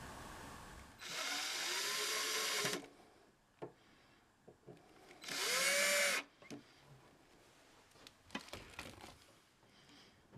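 Cordless drill driving small wood screws to fasten guitar tuners to a headstock: two short runs, about two seconds and then about one second long, the motor's whine rising as it spins up and falling as it stops. A few light clicks of handling follow.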